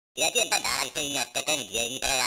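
An electronically distorted, effects-processed voice with shrill ringing overtones. It starts a fraction of a second in and wavers in pitch in short broken phrases.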